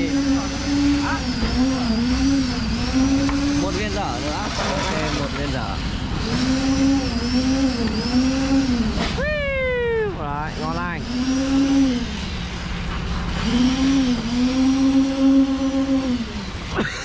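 A motor running steadily, its pitch dipping and recovering over and over in an even rhythm, about twice a second. About nine seconds in a falling shout cuts across it.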